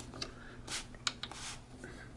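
Faint clicks and scrapes of a cable's round plug being worked into a socket on a military radio receiver's metal front panel, a few scattered small ticks rather than one firm snap.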